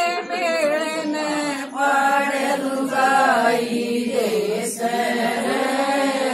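A group of women singing a Haryanvi folk song (lokgeet) together, their voices in a steady chant-like melody.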